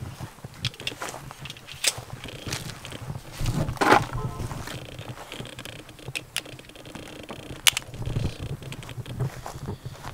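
Footsteps on grass and the rustle and handling noise of a handheld camera, with scattered short clicks, one sharp click in the latter half and a brief louder sound about four seconds in.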